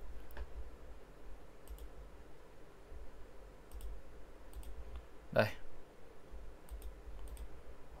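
About half a dozen faint computer-mouse clicks, irregularly spaced, as a drawing tool is chosen and a line placed on a chart, over a low steady hum.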